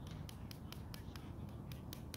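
Small hand tool picking and scraping at a gypsum brick to free a buried piece: a quick, uneven run of small sharp clicks, about six a second.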